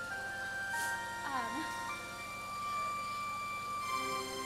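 Background music on an electronic keyboard: a slow melody of long held notes, each lasting about a second or more, with a brief sliding voice sound about a second and a half in.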